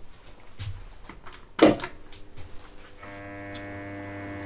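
A few light handling clicks and a sharp knock about one and a half seconds in. About three seconds in, the milling machine's spindle motor is switched on and runs with a steady hum, turning a coaxial indicator to check the centring of a piston in the vise.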